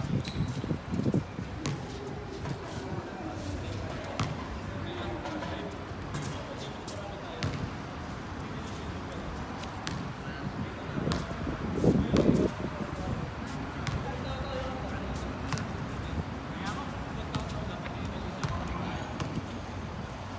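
Sounds of a basketball game: a basketball bouncing on the court, with scattered short, sharp impacts and background chatter. A burst of voices comes about twelve seconds in and is the loudest moment.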